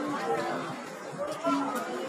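People's voices: talking and chatter from several people around the camera, with no other distinct sound.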